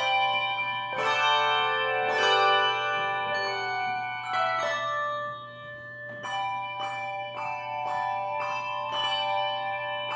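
Handbell choir playing: brass handbells struck in chords, each left ringing into the next, a new chord about once a second.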